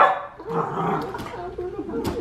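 A small dog gives a sharp, loud yelp at the start, then barks and whines excitedly while jumping up at two people hugging.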